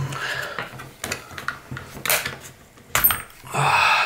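Plastic and metal parts of an airsoft electric pistol being handled, clicking and rattling as the gearbox is worked loose from the frame, with a sharp click about three seconds in and a louder scraping rustle near the end.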